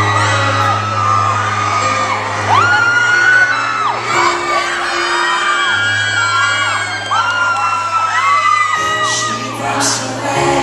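Live piano-led ballad with long held low notes, under many long high-pitched screams and whoops from the audience that rise, hold and fall over one another.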